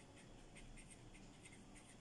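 Faint scratching of handwriting, many short quick strokes of a writing tip on a page.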